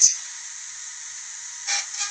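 Steady hiss of a recorded FM radio broadcast in a gap in the talk, with a brief voice sound near the end.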